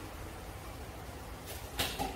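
Kitchenware being handled at a counter: a faint short knock about one and a half seconds in, then a louder sharp clatter just before the end, over a steady low hum.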